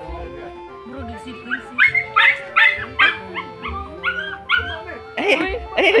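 A dog barking in a quick run of about eight short, high barks, roughly three a second, over background music with a steady low beat. A voice comes in near the end.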